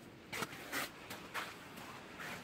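A few faint footsteps on snow, about half a second apart.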